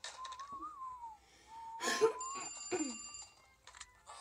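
Cartoon soundtrack: a character whistles a wavering tune in two short phrases, then a telephone bell rings sharply about two seconds in, its ring lasting about a second.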